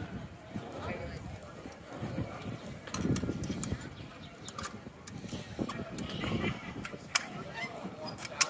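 Outdoor crowd bustle with indistinct background voices, and a few short sharp clicks, the clearest near the end.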